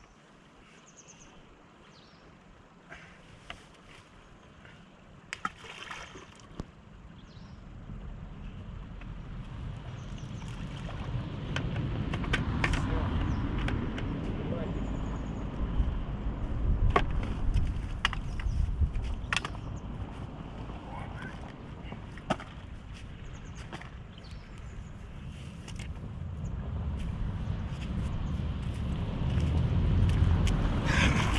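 Wind buffeting the microphone in gusts: quiet at first, then a low, fluctuating rumble that builds from about a quarter of the way in, swells and eases, and grows again near the end. It is punctuated by a few sharp clicks and knocks.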